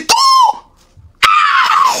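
A man's voice crying out in two shrill, drawn-out screams of mock anguish, the second one ('Aïe!') sliding slightly down in pitch. There is a short gap between them and a brief click just before the second.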